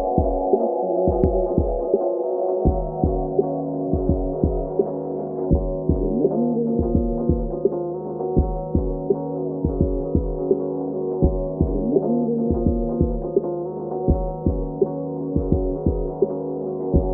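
Hip-hop remix music: a heavy kick-drum beat in repeating pairs of hits under sustained synth chords, with the treble cut so that it sounds muffled.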